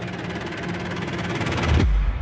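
Trailer sound design: a dense, rapidly pulsing swell that grows louder and ends in a deep boom near the end.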